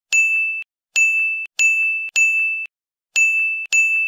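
A high-pitched ding sound effect repeated six times at uneven intervals. Each ding lasts about half a second and is cut off sharply.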